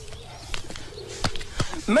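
A bird's low cooing call, heard twice as a faint steady tone, with a few light knocks in between.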